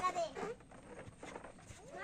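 A man's voice speaking briefly at the start, then a quieter stretch of faint background noise before voices resume near the end.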